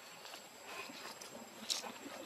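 Faint outdoor ambience with scattered soft rustles and one sharp click or snap about three-quarters of the way through.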